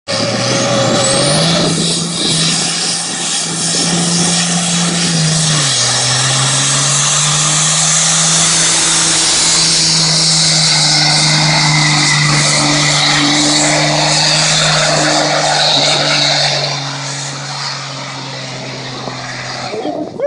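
Cummins 12-valve inline-six diesel in a pickup held at high revs during a burnout, with the rear tyres spinning on the pavement. The engine note steps up about a second in, drops back slightly near six seconds, and the sound falls off about seventeen seconds in.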